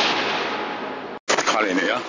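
A loud, noisy crash that ends the intro soundtrack, fading away over about a second and a half and then cutting off abruptly at an edit. A man's voice starts just after.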